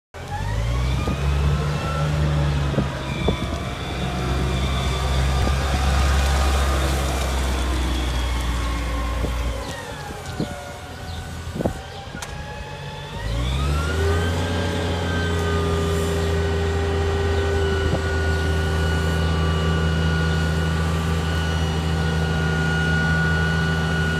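Kalmar C100 propane forklift engine running with a whine that rises and falls. About ten seconds in it drops to a quieter idle. About three seconds later it revs up again and holds steady with a high hydraulic whine as the mast is raised.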